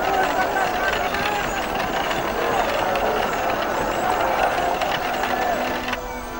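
A crowd of many voices cheering and calling out together. Music comes in near the end.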